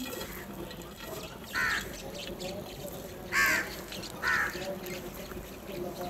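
House crows cawing: three short, harsh caws, the middle one the loudest, from birds squabbling over a bowl of food.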